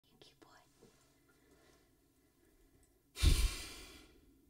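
A few faint small clicks, then, about three seconds in, a sudden loud breath blown close into the vocal microphone with a low pop, fading within a second.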